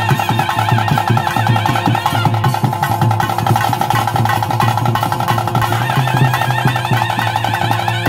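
Bhoota kola ritual music: a reed pipe holds a steady melodic line over fast, continuous drumming.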